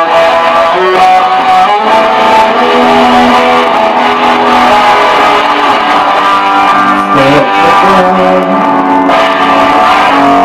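Electric guitar played live in an instrumental passage with no singing, held notes ringing and changing about once a second.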